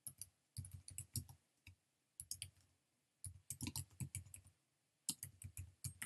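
Typing on a computer keyboard: quick runs of keystrokes separated by short pauses.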